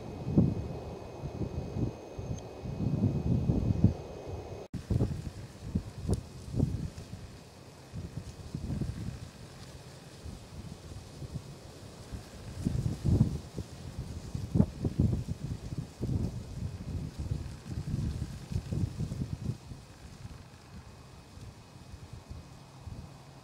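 Wind buffeting the microphone in irregular low gusts, heaviest in the first few seconds and again a little past the middle.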